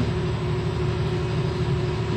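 Steady low mechanical hum with a constant droning tone, unchanged throughout: background machinery running.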